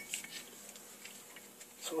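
Quiet moment with a few light metallic ticks as a taper shaft is spun by hand into a Harley-Davidson Evolution flywheel, screwing it down before it is snugged with a wrench.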